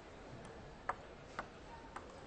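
Table tennis ball bouncing three times, each a sharp click, about half a second apart, as it is bounced before a serve.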